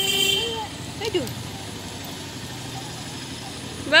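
Soft voices talking briefly near the start and about a second in, over a steady low outdoor background noise with road traffic in it.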